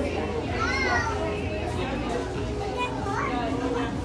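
Restaurant dining-room chatter, with indistinct background voices and a child's high-pitched calls, over a steady low hum.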